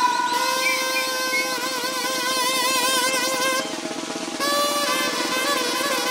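Live Mexican banda music: the wind section holds long notes with vibrato over a snare drum roll. About three and a half seconds in the notes drop away briefly, then a new held chord starts over the roll.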